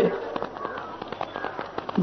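Faint crackling: many small scattered clicks over a low steady hiss.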